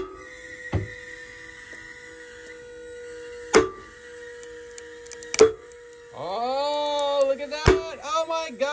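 Worn, weathered nylon rope with an exposed core and a butterfly knot under slow pull-test load: sharp cracks about a second in, twice in the middle and near the end as the rope and knot shift and pop under rising tension, over a steady electric whine from the pulling rig. A drawn-out rising and falling vocal exclamation comes in the last two seconds.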